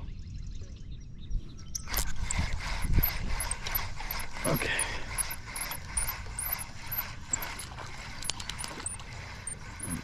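Spinning reel being cranked, its gears and clicking mechanism ticking rapidly and steadily from about two seconds in until near the end, as a hooked catfish is reeled in on a bent rod.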